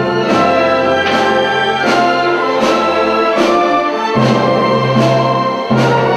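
Chamber orchestra playing classical music, with woodwinds (clarinet, oboe, bassoon) and strings, the notes held over a regular accented beat about every 0.8 seconds.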